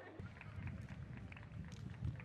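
Outdoor pitch-side ambience: a low, uneven rumble like wind buffeting the microphone sets in just after the start, under faint distant voices and scattered light ticks.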